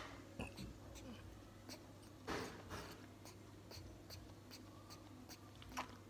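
Baby monkey suckling from a milk bottle: faint, irregular sucking clicks, with two brief louder breathy or rustling sounds a little after two seconds in and another near the end.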